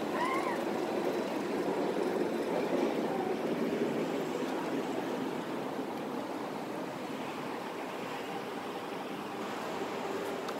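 Steady rush of road traffic on a city street, a little louder in the first half and easing off slightly toward the end.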